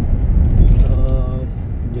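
Low rumble of road and engine noise heard inside a moving car's cabin, with a brief steady pitched tone near the middle.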